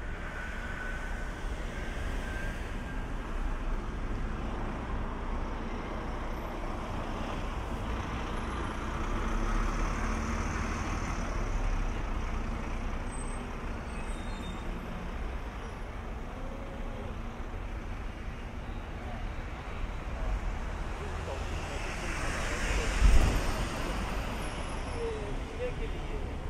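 City street traffic: cars passing in a steady wash of road noise that swells as vehicles go by, with a brief louder low thump near the end.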